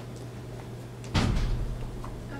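A single dull thump about a second in, over a steady low hum.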